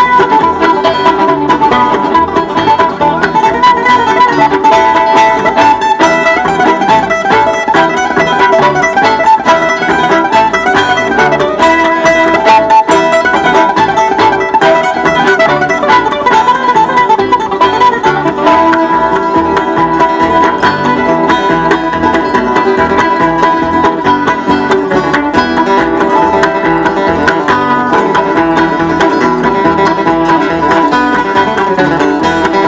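Acoustic string band playing an instrumental Celtic-style tune live, with an F-style mandolin and a fiddle over plucked rhythm strings.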